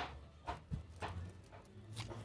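Footsteps on concrete paving, a few steps about two a second, each a short sharp scuff.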